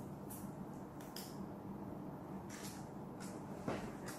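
Faint rustling and handling of a 3M 8210 N95 disposable respirator as its elastic straps are pulled over the head and the mask is pressed onto the face, with a few short scratchy rustles and one slightly louder one near the end.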